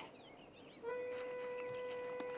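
Faint bird chirps, then about a second in the TV score comes in on a single held note that stays at a steady pitch.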